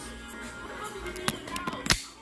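A few sharp knocks or clicks, the loudest just before the end, over faint background music.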